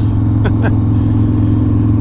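1991 Harley-Davidson Dyna Glide Sturgis's 1340 cc Evolution V-twin running steadily at cruising speed, heard from the rider's seat.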